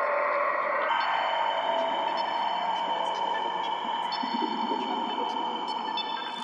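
Intro of a forest psytrance track: layered synthesizer drones and held tones with faint, scattered high clicks, and no beat or bass yet.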